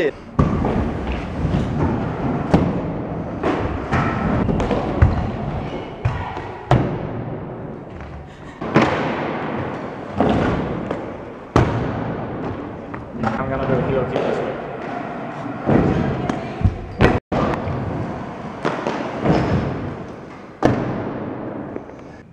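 Stunt scooters riding on skatepark ramps: the wheels roll steadily, with repeated sharp thumps of landings and impacts every second or two, and voices in the background.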